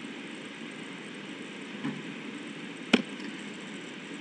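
Steady hiss of room and recording noise, with one short, sharp click about three seconds in as the presentation slide is advanced.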